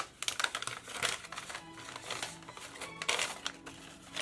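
A folded paper invoice crinkling and rustling in gloved hands as it is unfolded, in a run of irregular crackles. Soft music plays underneath.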